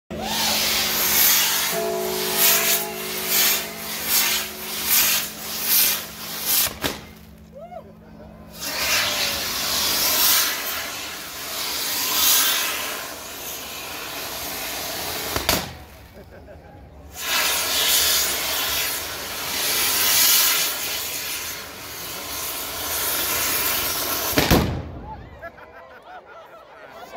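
Fireworks rigged in hanging papier-mâché effigies going off: loud hissing of spraying sparks in long surges with two short lulls, rapid popping in the first several seconds, and sharp bangs about halfway through and just before the end as the figures burst.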